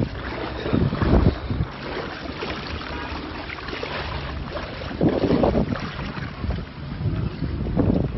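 Floodwater sloshing and splashing as someone wades beside a car, with wind rumbling on the phone's microphone; the water surges louder about a second in and again around five seconds in.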